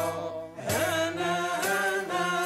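Moroccan Andalusian (āla) nūba: a men's ensemble singing in unison, the voices bending through ornamented lines over a steady low accompaniment. Sharp strokes fall about once a second.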